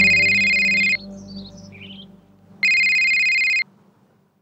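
Electronic telephone ring: two steady, high multi-tone rings, each about a second long, with a pause of under two seconds between them. Soft background music fades out under the first ring.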